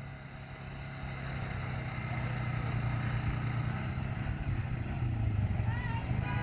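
Low steady engine drone of approaching vehicles, led by an ATV, growing gradually louder as they come up the road. A short rising tone starts just before the end.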